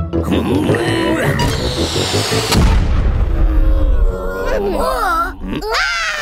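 Cartoon background music with sound effects, including a heavy low rumble about halfway through, then the bunnies' wordless squeaky vocalizations toward the end.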